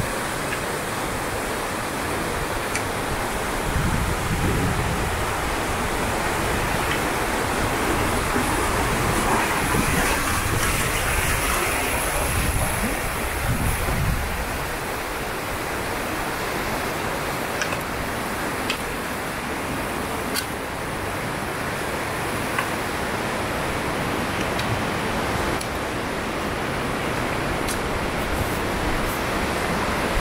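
Steady rushing outdoor noise with a fluctuating low rumble, and a few light clicks in the second half.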